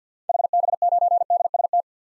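Morse code sent as a single steady beep tone at 50 words per minute, spelling the call sign HB9DST in about a second and a half.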